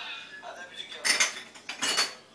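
Dishes and cutlery clattering: two short bursts, about a second in and again near the end.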